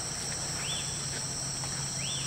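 Steady chorus of insects, crickets or cicadas, with a low steady hum beneath and two short rising-and-falling chirps, one under a second in and one at the end.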